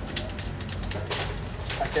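Plastic juggling rings taped together into a figure eight, clicking and clacking irregularly as the hand strikes and turns them.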